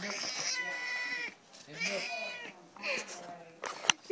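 Domestic cat meowing in protest at being petted: one long, steady call in the first second, then a shorter call about two seconds in and a brief one near three seconds. A sharp click just before the end.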